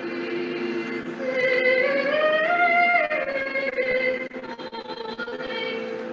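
Recording of a choir singing a polyphonic, Western-style arrangement of a Turkish folk song, with held chords under a melody that rises about two seconds in and falls back around three seconds.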